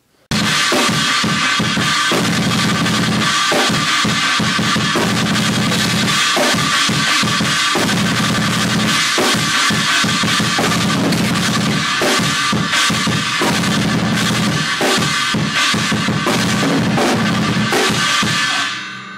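Metal drumming on a full drum kit: fast bass-drum patterns on a double-bass pedal under snare hits and cymbals. It starts abruptly just after the opening and keeps up a steady, loud flurry of strikes throughout.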